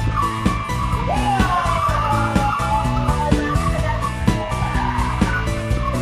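Tyres of a Honda hatchback squealing as it drifts, a wavering screech that rises and falls in pitch, heard over music with a steady beat.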